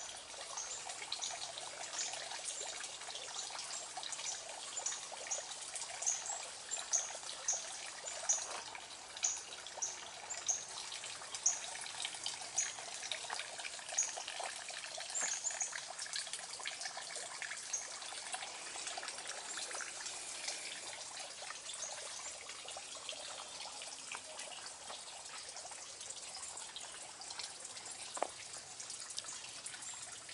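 Water trickling steadily in a garden water feature. Through the first half there is a run of short, high sounds, about one every 0.7 s, and a single click comes near the end.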